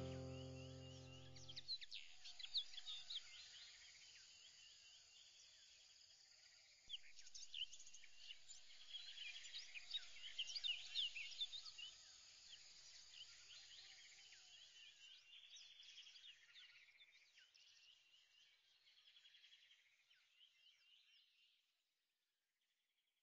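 Background music ending in the first two seconds, then faint birds chirping: many short, quick high notes that grow busier around the middle and fade out near the end.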